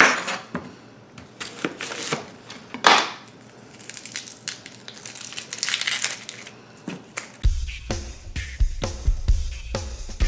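Kitchen knife cutting through a red onion onto a plastic cutting board, a few sharp chops, with the papery onion skin crackling as it is peeled off in the middle. About seven seconds in, background music with a heavy bass comes in under the cutting.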